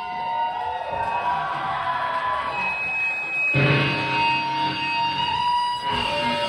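Live band playing amplified music through PA speakers, with held notes; a deeper, fuller part comes in a little past halfway.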